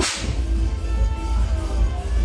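A confetti cannon fires once: a sharp pop with a short hissing whoosh that dies away in about half a second. It plays over loud music with a heavy bass beat.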